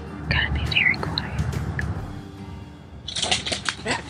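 A person laughing in a run of short bursts near the end, after a low rumble of wind on the microphone and a few quiet spoken sounds.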